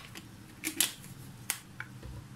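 A few short, sharp clicks and light knocks of kitchenware being handled on a countertop: a close pair a little under a second in, then a single sharp click about a second and a half in.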